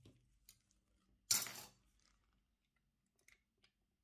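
Plastic scale-model kit parts handled with gloved hands: one short scraping rustle of about half a second, a little over a second in, and a few faint light clicks.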